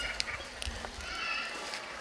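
Low outdoor background with a faint bird call about a second in, lasting about half a second.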